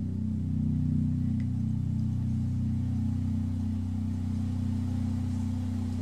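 DR Custom Basses Jona walnut bolt-on bass guitar with a low note or chord left to sustain, ringing steadily with a slow beating in its tone, then stopped sharply right at the end.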